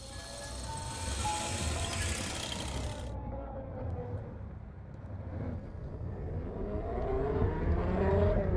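Film soundtrack sound design: a burst of static-like hiss for about the first three seconds over a steady low rumble. The rumble then swells with sustained, gliding tones near the end.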